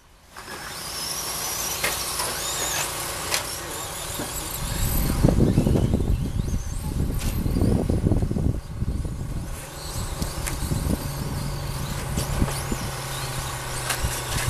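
Electric RC short-course trucks racing on a dirt track: several high motor whines gliding up and down in pitch as the trucks accelerate and brake, with a few sharp knocks. A low rumble runs beneath from about five seconds in.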